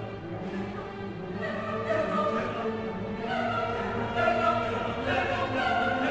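Opera chorus singing with a full orchestra: sustained choral notes over the orchestra, growing a little louder about three seconds in.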